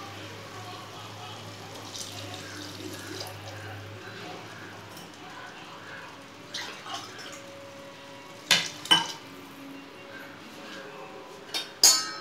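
Water being poured into a pressure cooker full of rice, a steady quiet pour, with two sharp clinks of a vessel against the pot about two-thirds of the way through and another near the end.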